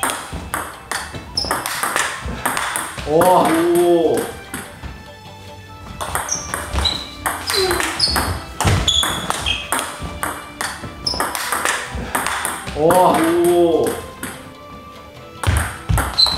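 Table tennis rally: the ball clicks off the bats and the table in a quick run of hits, one bat faced with ILLUSION SP short-pips rubber, with a short shout about three seconds in. About eight seconds in, the same rally and shout are heard again.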